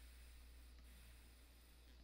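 Faint airy hiss of a long inhale drawn through a GeekBar Meloso disposable vape with its airflow wide open in restricted direct-lung mode. The hiss stops just before the end, over a steady low hum.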